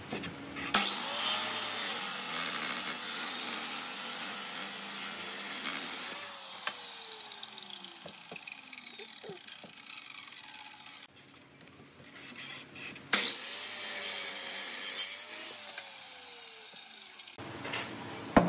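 Electric miter saw cutting through a thick block of solid wood twice. Each time the motor whines up and runs through the cut, then winds down with a falling whine; the first cut is longer and the second comes near the end.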